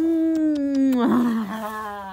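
A single long, drawn-out howl-like vocal call that slides slowly down in pitch, with a rough, breathy patch about a second in.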